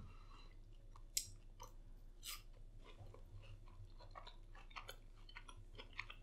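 Faint, irregular crunching and chewing as a person eats a crunchy Flamin' Hot–coated fried pickle, close to the microphone.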